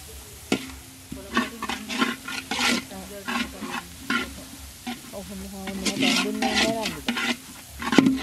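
Fried rice being stir-fried in a pan: a utensil scraping and knocking against the pan in irregular strokes, over a sizzle of frying.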